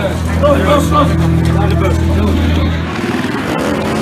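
V-twin motorcycle engine running with a steady low hum that gives way to a fast pulsing beat about three seconds in. Voices can be heard over it at the start.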